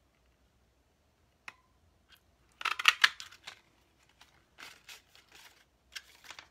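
Handheld tulip-shaped craft punch cutting a tulip out of cardstock: a sharp click about a second and a half in, then a loud crunch as the punch goes through the paper a little before the middle, followed by softer rustles and clicks as the paper is worked back out of the punch.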